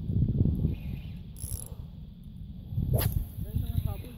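Spinning fishing reel being cranked by hand, its gears clicking rapidly under close handling rumble, while a hooked fish is reeled in against strong resistance. A sharp click comes about three seconds in.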